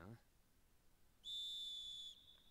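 A referee's whistle blown once, a steady high-pitched tone lasting just under a second, coming in a little past the middle after near quiet.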